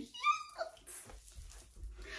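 A woman's brief, high-pitched squealing laugh in the first half-second, followed by faint low sounds of her moving about.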